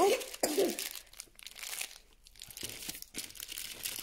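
Plastic snack wrapper crinkling, loudest in the first second, then fainter scattered rustles.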